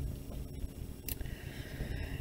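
A pen on paper: a sharp click about a second in as the tip meets the sheet, then a faint scratch as it draws a straight line across the page.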